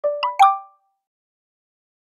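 A short intro sound effect: three quick pitched pops in about half a second, each with a brief ring.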